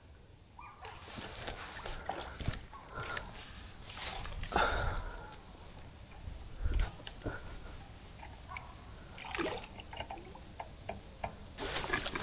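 Water splashing and sloshing in irregular bursts as a hooked carp is brought in and landed, the loudest splash about four seconds in.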